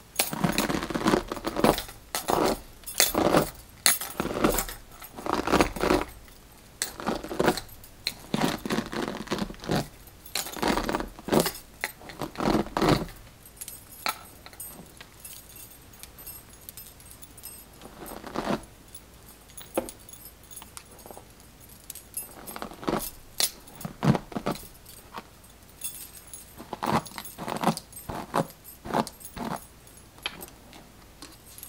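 Strokes of a plastic detangling brush through a doll's synthetic hair, with bracelets on the wrist jingling and clinking at each stroke. The strokes come about once a second, thin out and go quieter for several seconds in the middle, then pick up again near the end.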